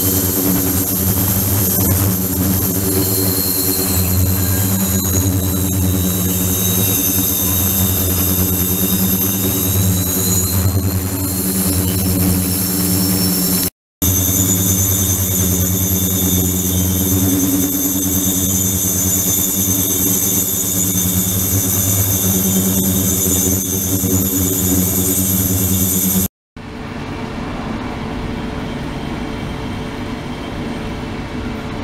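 Ultrasonic cleaning tank running with its liquid circulation pump: a loud steady hum with several high whistling tones above it, one of them slowly wavering in pitch. The sound cuts out briefly twice, and after the second break it is quieter and the high tones are gone.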